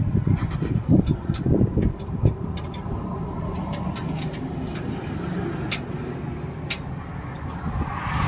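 A motor vehicle engine running with a steady low rumble, louder and uneven for the first two seconds, with a few sharp light clicks scattered over it.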